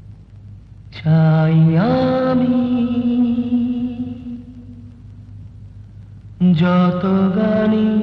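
Film background music: a chant-like voice holds long notes. The first swells in about a second in and slides up in pitch before holding steady, and a second held phrase starts about six and a half seconds in.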